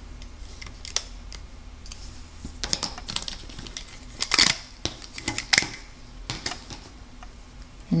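Small clicks and scratchy rustles of rubber loom bands being worked off a plastic loom with a hook and fingers, with a louder rustle about four and a half seconds in.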